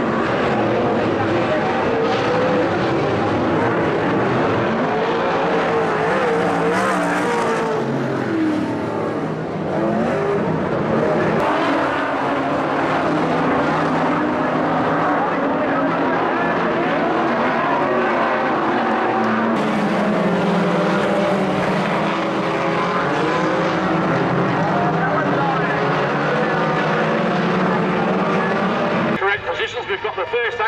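Several dirt-track speedway race car engines running hard, their pitch rising and falling as the cars lap the oval, at a steady loud level with a brief dip about a third of the way in.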